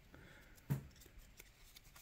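Quiet handling of a stack of trading cards just pulled from a torn-open foil pack: a faint rustle, with one short sharp click a little under a second in.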